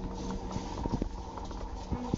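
Refrigerator-freezer humming steadily, several tones at once, with the door open. Scattered light knocks and clicks from handling sound over it.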